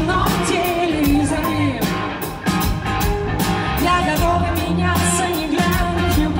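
A live rock band plays with a female lead vocal: a wavering sung melody over a steady drum beat, bass and keyboards, heard through a concert PA.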